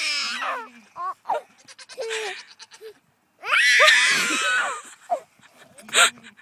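Baby goat bleating repeatedly in high calls, the longest and loudest about three and a half seconds in.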